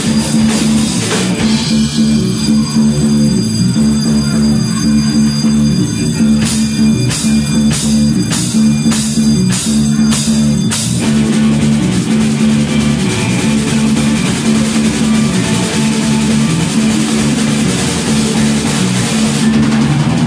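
Live rock band playing an instrumental passage on electric bass, electric guitars and drum kit, with no vocals. Evenly spaced drum hits stand out at about two a second around the middle, and the high end fills out from about halfway through.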